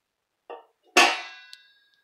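A steel plate set down as a lid on the rim of a metal pressure-cooker pot: a brief soft knock, then a sharp metallic clang about a second in that rings and fades.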